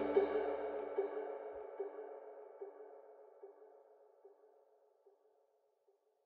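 End-screen background music fading out: an echoing note repeats about every 0.8 seconds, each repeat fainter, and dies away about four seconds in.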